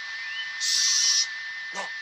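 Steam locomotive whistle blowing one steady shrill note without letup, the sound of a whistle stuck open. A loud burst of steam hiss comes about half a second in.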